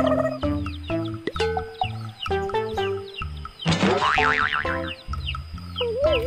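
Bouncy children's background music: a stepping melody over a steady bass line, with a cartoon sound effect, a rising wobbling glide, about four seconds in.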